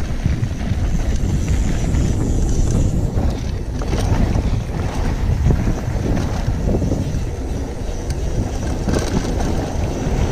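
Wind buffeting a GoPro Hero5 Black's microphone and knobby tyres rolling over a dirt trail as a Giant Reign 1 full-suspension mountain bike descends at speed. The steady rush is broken by a few sharp knocks from the bike over bumps.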